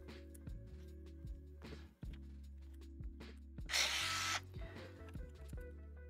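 Quiet jazzy ambient background music. Over it come light clicks of hand tools working a nut on the 3D printer's frame, and about four seconds in a brief scraping, hissing noise lasting under a second.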